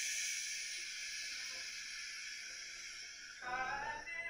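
A long, slow exhale, a breathy hiss that fades gradually over about three seconds. Near the end a steady pitched tone with several overtones comes in.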